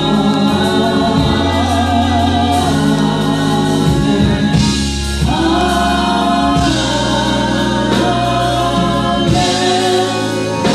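Gospel praise team singing in harmony into microphones, holding long notes that change every couple of seconds, with steady low notes underneath.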